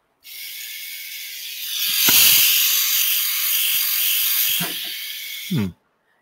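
Electric lint remover (fabric shaver) running: a small motor with a high, noisy whir that grows louder about two seconds in and cuts off suddenly near the end.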